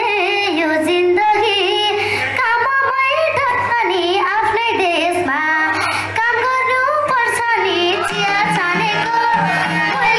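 A young girl singing a Nepali folk song live into a microphone through a PA system, over instrumental accompaniment.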